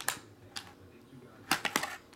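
Foil-wrapped trading card packs and their cardboard box being handled: a single click at the start, then a quick run of sharp crinkly clicks about one and a half seconds in as the packs are lifted out.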